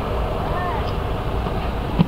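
Steady low rumble of an idling semi-truck heard from inside its cab, with a faint short pitched sound about half a second in.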